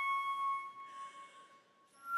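Silver concert flute holding a sustained note that fades away through the first half, followed by a soft breathy rush of air and a moment of near silence; a new, higher flute note begins at the very end.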